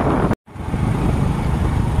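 Steady wind and road noise from riding in an open vehicle, with a brief dropout to silence just under half a second in before the rushing noise resumes.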